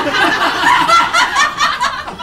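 An audience laughing together at a joke: a burst of many people's laughter that starts suddenly and tails off near the end.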